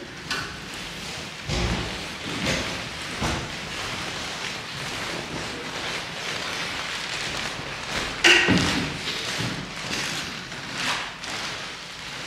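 People getting up from their seats: chairs shifting and knocking on a parquet floor, with clothing rustling and shuffling steps. A heavier thud comes about a second and a half in and a sharp knock about eight seconds in.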